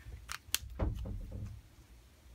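Pens being handled on a desk: two sharp clicks, then a short clatter, as a marker is set down and a water brush is picked up.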